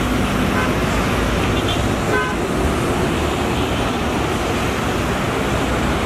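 Road traffic noise with the low rumble of a Volvo B9R coach's rear-mounted diesel engine as the bus pulls away down the road. A short horn toot sounds about two seconds in, and a fainter brief beep comes just after the start.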